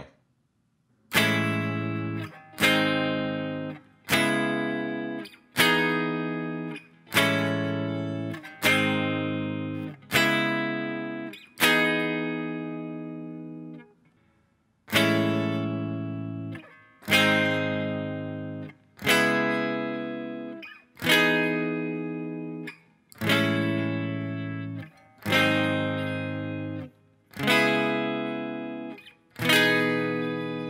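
Electric guitar playing a four-chord progression twice round, each chord struck once, left to ring and then stopped before the next. The first eight chords come about one and a half seconds apart; after a short pause the same progression is played more slowly, about two seconds per chord.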